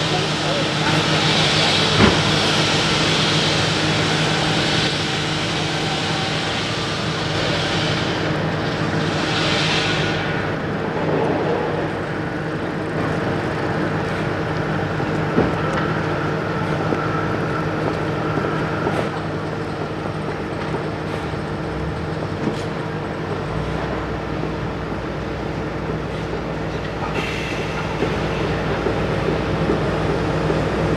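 Steady, low diesel engine hum from construction machinery, with a hiss over it for the first ten seconds and a few sharp clicks. A deeper rumble joins about two-thirds of the way through.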